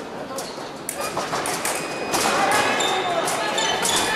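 Sharp knocks and clicks from foil fencers' feet and blades on the piste, several in quick succession, echoing in a large hall. Voices talk in the background and grow louder from about two seconds in.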